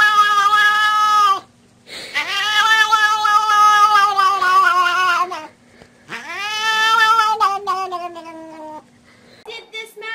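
A cat yowling in three long, drawn-out calls, each a couple of seconds or more, with short breaks between them. Each call rises at the start, holds its pitch, then drops away.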